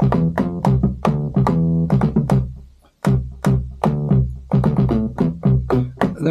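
Synth bass notes played on the pads of an Akai MPC One through a plugin synth: a run of short plucky notes in a major scale over a deep low tone. The notes stop briefly about three seconds in, then start again.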